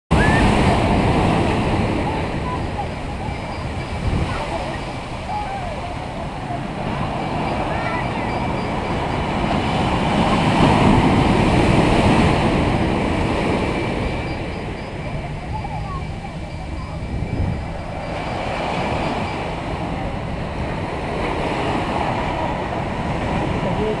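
Ocean surf breaking and washing up a sand beach, swelling louder about halfway through, with a crowd's scattered voices and calls over it.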